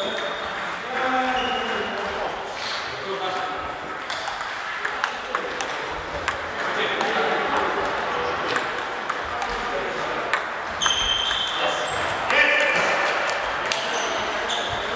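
Table tennis balls clicking off bats and tables in an irregular patter, from the rally in front and from several other tables in play across the hall.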